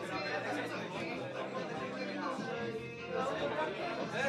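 Background chatter of several people talking at once, with no single voice clear and faint music underneath.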